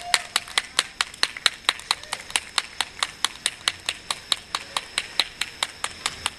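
A fast, even rhythm of sharp percussive claps, about five a second, over a faint steady high tone.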